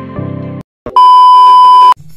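Music plays and cuts off a little after half a second. After a short gap a loud, steady electronic beep at one pitch sounds for about a second and stops abruptly.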